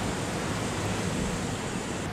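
Steady outdoor rushing noise with a low rumble, even and unbroken, like wind on the microphone or distant surf.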